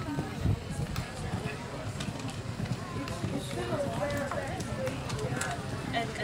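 Indistinct background voices talking, over the dull, irregular hoofbeats of horses cantering on a sand arena.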